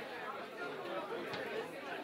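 Indistinct chatter of a crowd of people talking among themselves, a steady low murmur of many voices.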